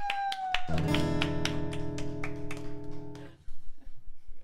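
Acoustic guitar chord strummed once and left ringing, then damped off short of the end. Just before it, a voice holds a high rising 'whoo'.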